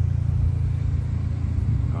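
A car engine idling: a steady low rumble.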